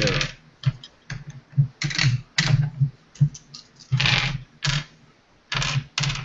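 Dice being gathered and clattering on a wooden table in a dozen irregular clicks and short rattles.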